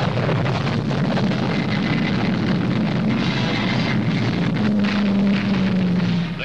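Roar of a Lockheed P-80 Shooting Star's turbojet engine as the jet takes off and makes its low speed run: a steady, noisy rumble, with a low hum holding steady over the last second or so.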